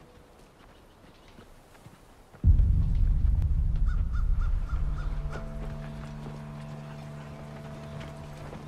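A deep low rumble from a drama soundtrack starts suddenly about two and a half seconds in. It slowly fades into a sustained low drone. In the middle, a quick run of six short bird calls sounds over it.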